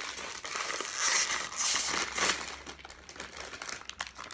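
Plastic Kit Kat wrapper crinkling and rustling as it is handled, loudest about one second in and again around two seconds in.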